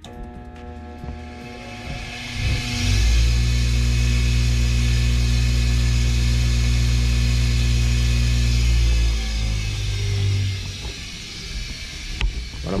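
An old bench grinder's electric motor switched on about three seconds in, running up to speed with a loud, steady hum and whir for about six seconds, then switched off and spinning down. It is running smoothly on power from a 2,000-watt, 12-volt pure sine wave solar inverter.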